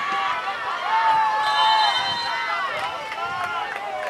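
Several people shouting and cheering at once on a soccer field, long overlapping yells that are loudest about a second in.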